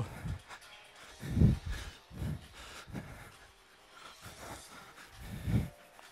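Sneakered feet stepping onto and off an aerobic step platform and wooden floor: dull thumps about once a second.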